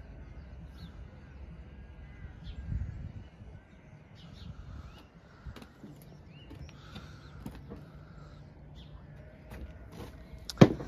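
Quiet outdoor ambience: birds calling now and then over a low steady rumble, with a few light clicks and a dull bump about three seconds in.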